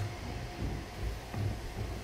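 Room tone in a small meeting room: a steady low hum with faint irregular low thumps and rustling.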